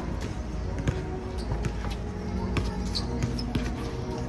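Basketball bouncing on an outdoor hard court: a string of irregular bounces and dribbles.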